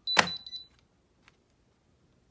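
HDE diamond selector tester beeping in rapid short high-pitched pulses, its signal that the stone tests as diamond, with one sharp click about a fifth of a second in; the beeping stops about half a second in.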